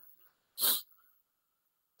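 A single short, breathy puff of a person's breath close to the microphone, a quick exhale or sniff lasting about a third of a second, with near silence around it.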